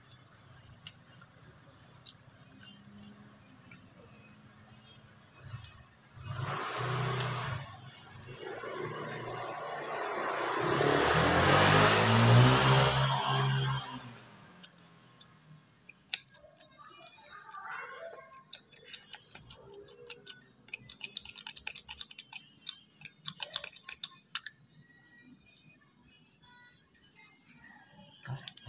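A whooshing noise swells up, peaks about halfway through and fades out over a few seconds, after a shorter swell just before it. Then come many light clicks and taps of plastic knapsack-sprayer pump parts being handled.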